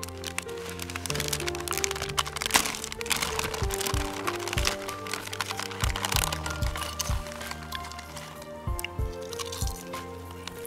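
A plastic snack bag crinkling and crackling as it is handled and pulled open, over background music.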